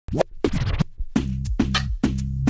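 A vinyl record scratched back and forth on a DJ turntable, with quick pitch sweeps, then about a second in a beat with a deep bass line and drum hits comes in.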